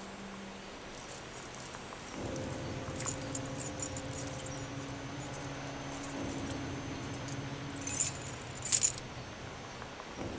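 A bunch of keys jangling as they are fished out and handled, in scattered jingles with the loudest ones near the end. A low steady tone sounds underneath from about two seconds in.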